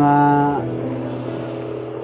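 Background music holding a steady sustained chord. At the start a man's voice draws out one syllable for about half a second before trailing off.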